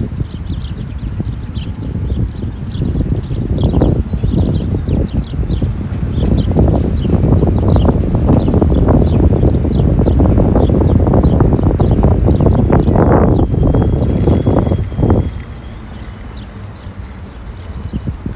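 Small birds chirping again and again over a loud, low outdoor rumble. The rumble builds through the middle and drops away about three seconds before the end.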